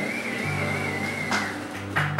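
Guitar played softly through the PA, low notes ringing one after another, under a high wavering tone that stops about one and a half seconds in; sharper strummed strokes come in near the end.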